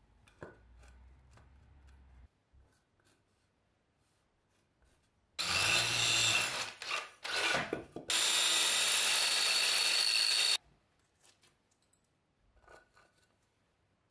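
Cordless drill boring into the wall in two runs: a stop-start burst of a few seconds, then a steady run of about two and a half seconds that cuts off suddenly.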